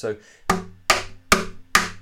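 Four snappy taps on the underside of an acoustic guitar's body, evenly spaced about 0.4 s apart, each with a short ring from the body. This is a percussive-guitar snare drum sound.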